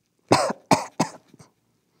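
A man coughing three times in quick succession, with a fainter fourth cough just after.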